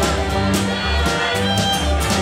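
Live string-band music: a low bass note on each beat, about twice a second, under strummed and plucked strings.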